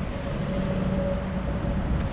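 Steady low rumble of motor vehicles, with a faint steady hum over it.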